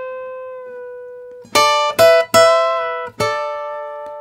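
Steel-string acoustic guitar played fingerstyle: a high note held at the top of a half-step bend from B to C rings and fades. About a second and a half in, three quick plucked notes follow, and a last note rings out near the end.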